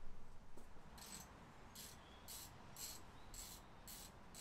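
A socket ratchet undoing the scooter's 10 mm exhaust mounting bolts: faint short bursts of ratchet clicking, about two a second, starting about a second in.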